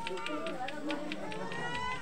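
Several people's voices overlapping, with a quick, even ticking under them, about five ticks a second.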